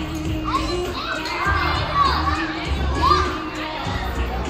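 Many children shouting and squealing in a large indoor hall, over background music with a pulsing bass beat.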